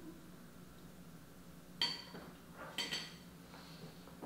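A metal fork clinking twice against a plate, two short ringing clinks about a second apart.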